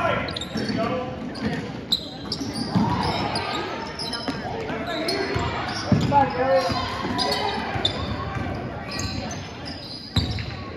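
Basketball dribbled on a hardwood gym floor, with sneakers squeaking and indistinct voices of players and spectators, echoing in a large gym. The loudest bounces come about two seconds and six seconds in.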